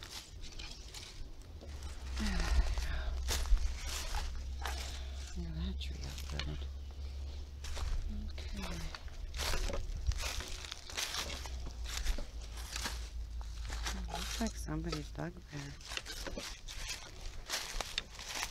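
Footsteps crunching through dry leaves and twigs on a forest floor, a stream of irregular crackles, over a steady low rumble on the microphone. A few brief murmurs of a voice come in now and then.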